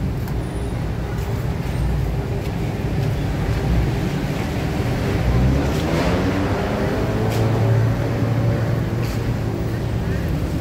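Steady city street traffic noise, with the drone of car and motorcycle engines. About halfway through, one vehicle's engine note rises and falls in pitch as it passes.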